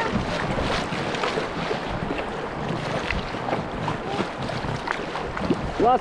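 Choppy river water rushing and splashing against a kayak's hull as it runs through small waves, with wind buffeting the microphone.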